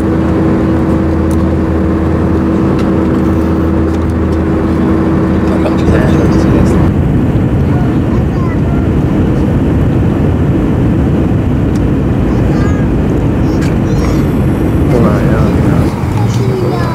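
Airliner cabin noise in flight: a steady roar of engines and rushing air. A low steady hum sits under it for the first several seconds, then gives way to a broader rush about seven seconds in.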